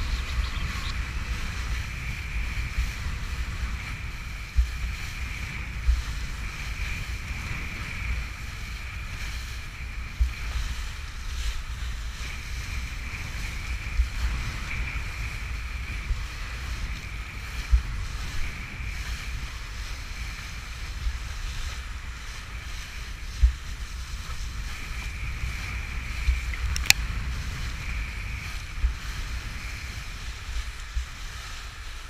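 Wind rumbling on an action camera's microphone and water rushing past a kiteboard riding across choppy water, with irregular thumps every couple of seconds as the board hits the chop.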